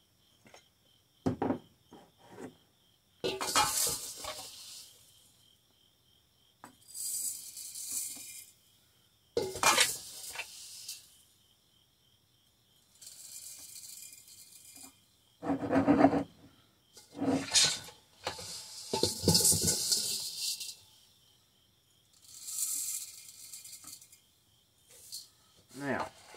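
Partly dried chaste tree berries scooped from a stainless steel bowl with a small glass cup and poured through a plastic funnel into a glass jar. There are about five hissing, rattling pours of a second or two each, with sharp knocks of glass against steel and glass between them.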